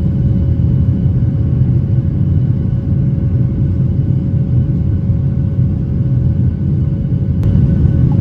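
Airliner cabin noise during the climb after takeoff: the jet engines and the rushing air make a loud, steady low rumble with a faint steady hum above it, heard from a window seat of a Jeju Air Boeing 737.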